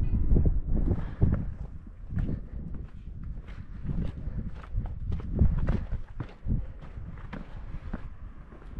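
Footsteps crunching on a gritty sandstone trail, uneven steps as the walker climbs over rock ledges and steps.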